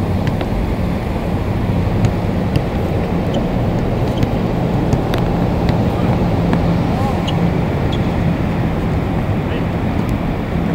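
Wind rumbling on the microphone with a steady low hum underneath, broken by sharp knocks every second or so from a basketball bouncing on a concrete court.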